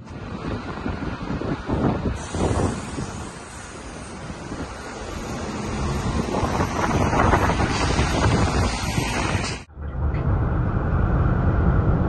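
City road traffic with wind noise on the microphone. About ten seconds in, the sound cuts abruptly to the steadier low drone of road and engine noise inside a car cruising at highway speed.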